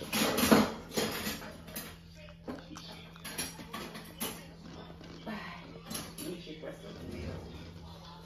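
A voice briefly in the first second, then low room noise: a steady low hum with faint scattered clicks and small handling sounds.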